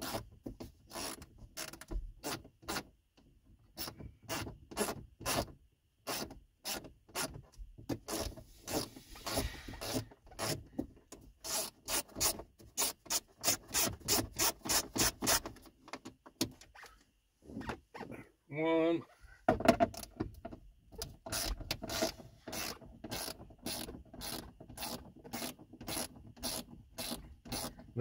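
Ratchet wrench with a 7 mm socket clicking in quick repeated strokes as the bolts at the top of a Ford F-150's instrument cluster bezel are loosened. There is a short pause about two-thirds of the way through.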